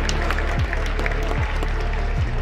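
Music with a deep, regular beat playing over outdoor public-address loudspeakers, with scattered clapping from the crowd.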